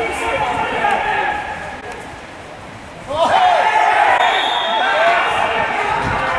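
Men's voices shouting and calling out across an outdoor football pitch during play. The calls drop away briefly and come back louder about three seconds in.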